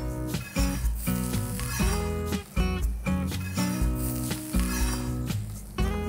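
Background music over an onion, coconut and spice masala sizzling in oil on a flat tawa as it is stirred with a spatula.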